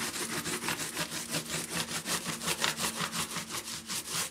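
Hand sanding of a wall: a sanding block rubbed quickly back and forth against the wall panel, about five strokes a second in an even rhythm, with a faint steady hum underneath.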